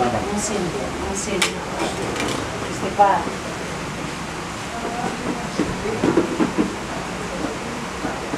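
A person's brief wordless vocal sounds and sharp hissing breaths, loudest in a short voiced sound about three seconds in, with a cluster of low sounds around six seconds, over a steady low hum. These are a patient's reactions while a broken lower-leg bone just above the ankle is being massaged and set by hand.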